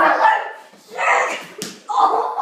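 A dog barking twice, loud, about a second apart.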